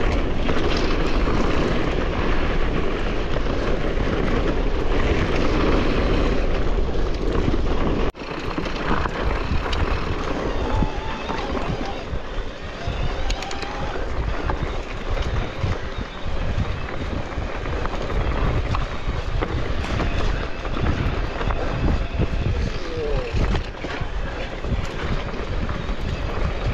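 Mountain bike ridden down a rough, stony dirt singletrack: wind rushing over the camera microphone mixed with the rumble and rattle of the tyres and frame on loose stones. About eight seconds in the sound breaks off for an instant and comes back as a more uneven low rumble with frequent knocks.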